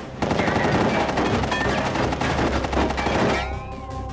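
Automatic gunfire, a rapid run of shots that starts suddenly just after the start and stops about three seconds in. Sustained music notes take over near the end.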